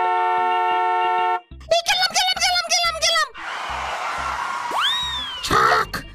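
Cartoon soundtrack. A held chord of steady tones cuts off about a second and a half in. A high-pitched cartoon voice follows, then a whooshing sound effect with a swooping whistle that rises and falls.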